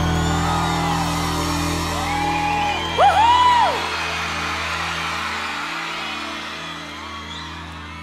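A live band's held final chord ringing out and slowly fading, over a cheering crowd. A loud whoop rises and falls about three seconds in.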